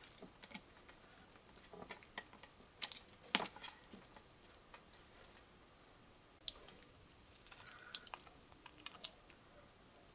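Small sharp clicks and scrapes of a Swiss Army knife blade cutting into a plastic bottle cap, with the cap and knife handled in the fingers. They come in two scattered clusters, one about two to four seconds in and another from about six and a half seconds on.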